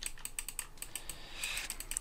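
Quiet, rapid, uneven light clicks and taps of a computer input device while letters are hand-drawn on a digital blackboard.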